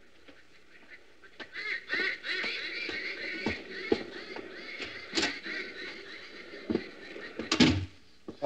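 Radio-drama sound effects of birds calling over and over, starting about a second and a half in, with a few scattered knocks and thumps, the loudest near the end.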